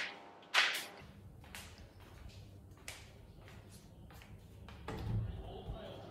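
Two short sharp whooshes near the start, then the low rumble of a handheld camera being carried along with small footstep clicks. A thump comes about five seconds in, followed by faint television sound from a football broadcast.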